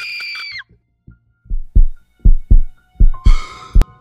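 Heartbeat sound effect: deep, loud thumps in lub-dub pairs, three pairs in a row, ending on one sharp hit. It opens on a laugh drawn out into a held high note, and a harsh, breathy noise sounds over the last beats.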